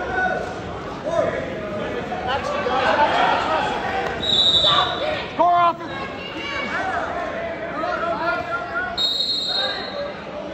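Spectators shouting and calling out from the bleachers at a wrestling bout in an echoing gym, with one louder shout just after the middle. Two brief high-pitched squeaks cut through, one a little before the middle and one near the end.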